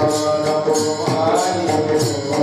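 Devotional chanting of an abhang in a Warkari kirtan, with the singing carried over small brass hand cymbals (taal) struck in a steady beat of about four clashes a second.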